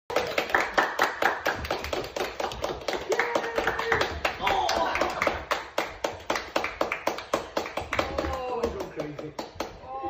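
A group of people clapping in a quick, steady rhythm, about four claps a second, with voices over it; the clapping thins out and stops near the end.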